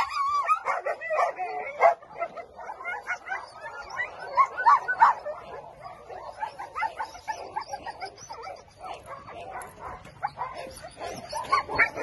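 A dog vocalising: many short, high calls in quick succession, with a wavering whine near the start.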